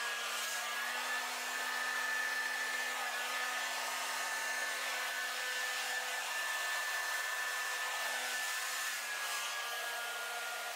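Handheld hair dryer blowing wet acrylic paint across a canvas: a steady rush of air over a constant motor whine.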